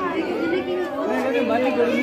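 Several people talking at once: overlapping chatter of a small gathering.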